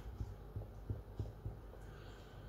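Soft irregular low taps, about five in two seconds, from hands working on a tabletop, over a steady low hum.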